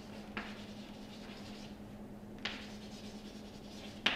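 Chalk writing on a blackboard: faint scratching, with two sharper strokes about a third of a second in and about two and a half seconds in, over a steady low hum.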